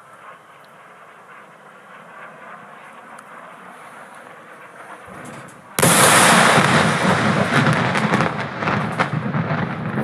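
A large bomb explosion. A faint background is broken about six seconds in by a sudden, very loud blast, which goes on as a long rumble with crackling to the end.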